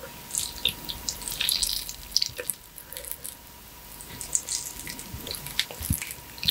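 Close-up wet, sticky squelching and crackling of a ripe, juicy mango as its skin is peeled away and the flesh is pulled apart by hand, in many small irregular clicks.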